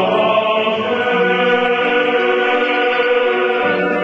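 Church choir singing sustained chords, the harmony moving every second or two.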